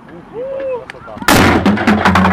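A bust pulled over by a rope crashes onto paving stones: a sudden loud crash a little past halfway, followed by a run of sharp cracks and clatter.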